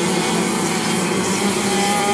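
A motor or engine running steadily and loudly, with a constant hum.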